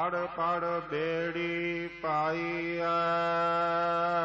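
A man singing a Gurbani verse in Sikh devotional kirtan style, in short melodic phrases at first, then holding a long note with vibrato from about three seconds in.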